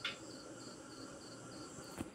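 An insect chirping faintly in the background: one louder chirp right at the start, then soft high-pitched chirps about three a second.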